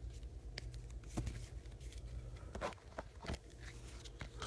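Faint handling of trading cards just drawn from an opened foil booster pack: a few scattered light taps and rustles over a low steady hum.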